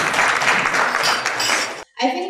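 Audience applauding, cut off suddenly near the end.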